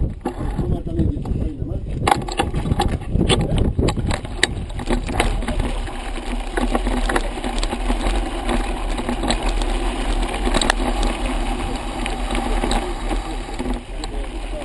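Mountain bike rolling downhill on a loose, stony dirt track: tyres crunching over gravel and the bike rattling, with many sharp knocks over the first half and a steadier rolling noise after, under a constant low rumble of wind on the microphone.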